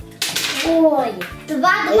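A child's voice speaking over faint background music.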